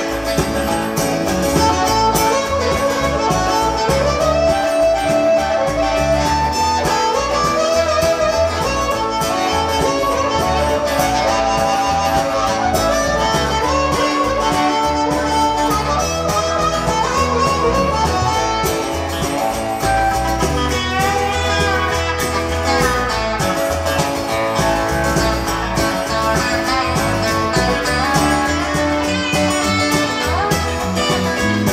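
Live roots-rock band playing an instrumental passage: a harmonica solo over electric guitar, acoustic guitar and bass guitar.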